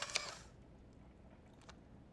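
Polaroid instant camera's motor ejecting the freshly taken print: a short mechanical whir with a couple of clicks that stops about half a second in.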